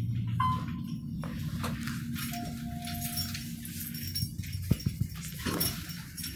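Elevator ride ending: a steady hum cuts off about half a second in, followed by a short high tone, then a longer lower tone, and a few sharp clicks near the end.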